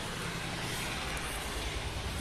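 Steady background noise, a low rumble with an even hiss and no distinct events.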